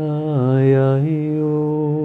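A man chanting a long held 'ya' as part of a spiritual blessing, in a single unaccompanied voice. The note dips in pitch and comes back up about half a second in, then holds steady.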